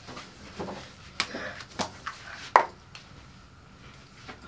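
Three sharp clicks over about a second and a half from handling an aerosol whipped-cream can, its cap and nozzle being worked. No spray is heard: the cream is not coming out yet.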